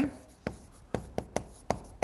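Chalk writing on a blackboard: about half a dozen sharp, irregular taps and short scrapes as a word is chalked onto the board.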